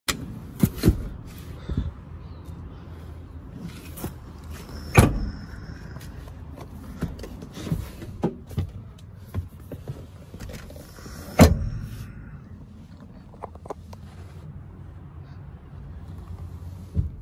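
Knocks and clicks from the rear seat and interior trim of a car being handled, the loudest about five seconds in and again past eleven seconds, over a steady low rumble that eases after about twelve seconds.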